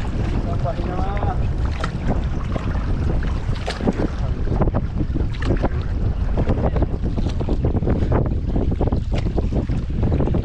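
Wind buffeting the microphone in a heavy low rumble, over water splashing and lapping against the hull of a small outrigger canoe moving across a lake.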